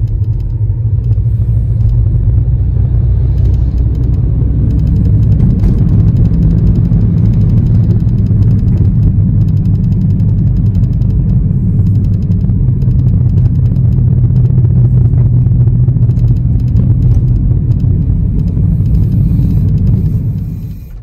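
Steady low rumble of a car driving along a road, heard from inside its cabin.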